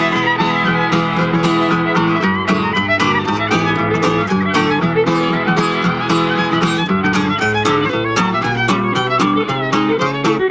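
Fiddle and acoustic guitar playing together: the bowed fiddle carries the melody over a steady strummed guitar rhythm.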